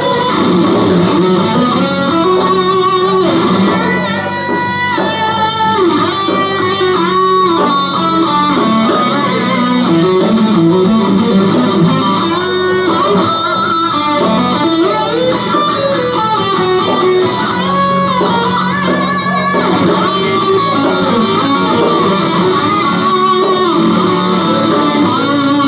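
Ibanez RG electric guitar playing fluid lead lines in an instrumental rock tune, with bent and sliding notes, over a backing track with a steady bass.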